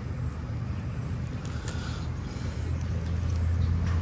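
A low, steady motor-like rumble, growing louder in the second half.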